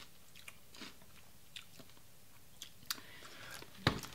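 Faint, sparse crunching and mouth clicks of a person chewing a fried pork rind, with a sharper click near the end.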